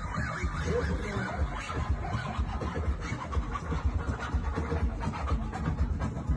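DJ dance music from a party sound system, with siren-like effects in the mix.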